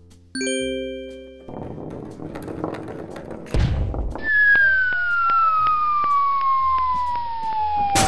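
Comedy sound effects: a bright chime rings once and dies away, then after a low thud a long cartoon falling whistle glides steadily down in pitch for about four seconds as the cat-treat packet drops.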